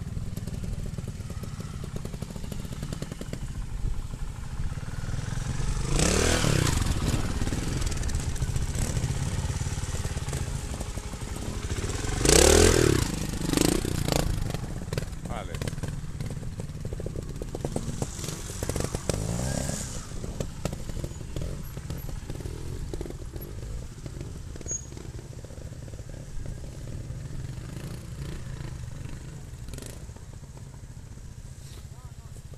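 Trials motorcycle engine running, revved up in a few short bursts about 6 seconds, 12 to 14 seconds and 18 to 20 seconds in, with a steady low running sound between; the burst at about 12 seconds is the loudest.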